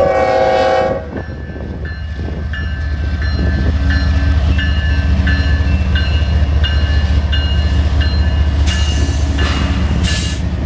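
A CSX diesel freight locomotive sounds a short horn blast of about a second at the start, then its engine rumble builds as the lead unit rolls past close by. A warning bell dings about twice a second throughout, and a rush of noise comes near the end.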